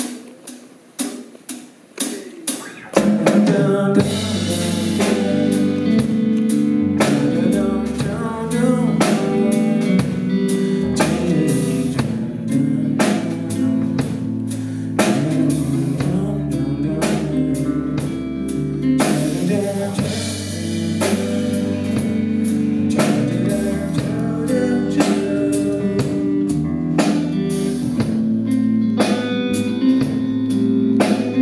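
Live band playing a groove-based song: electric guitar, electric bass, drum kit and keyboards, with a male voice singing. A few sparse hits open it, and the full band comes in about three seconds in.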